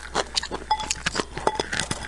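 Close-miked wet chewing and lip-smacking in quick, irregular clicks, with a couple of light taps of chopsticks against the bowl.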